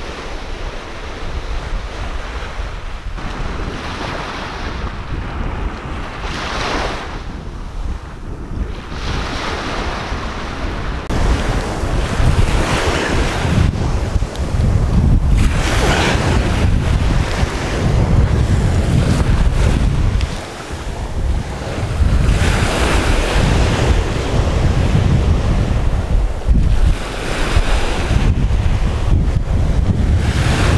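Small surf breaking and washing up the beach in rising waves, with wind buffeting the microphone. About a third of the way in the wind rumble grows much louder and stays heavy, dropping out briefly past the middle.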